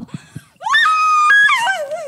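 A woman screaming: one long, very high cry starting about half a second in that rises sharply, holds, then drops into a wavering wail.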